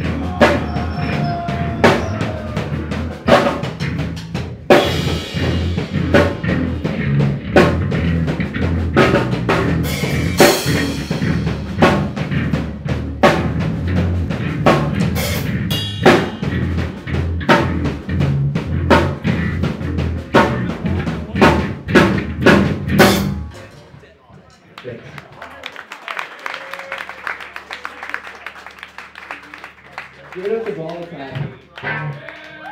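Live rock band playing loudly, with a pounding drum kit and electric guitar, cutting off abruptly about three-quarters of the way through. A low steady amplifier hum and quieter crowd sound remain after the stop.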